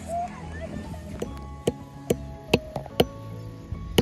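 A hammer knocking a nail into a wooden log: a run of sharp blows, roughly half a second apart, starting about a second in. Background music plays under it.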